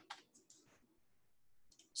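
Near silence with a few faint clicks of computer keys being typed: several in the first second and a couple more just before the end.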